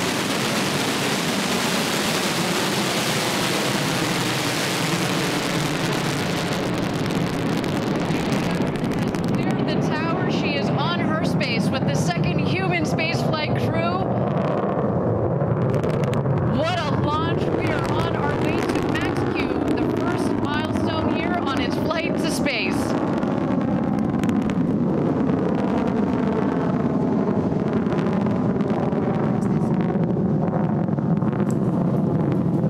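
Steady noise of the New Shepard rocket's BE-3 engine at liftoff and during the climb, loudest and brightest in the first several seconds. From about ten seconds in until past twenty, voices are heard over it.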